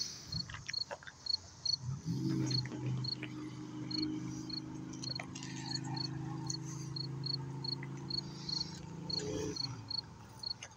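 Cricket chirping, short high chirps repeated about two to three times a second. Underneath, a steady low hum comes in about two seconds in and stops shortly before the end.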